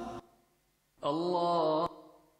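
A short pause in a video soundtrack, then a single held chanted vocal note of just under a second. The note bends slightly in pitch and cuts off abruptly with a click.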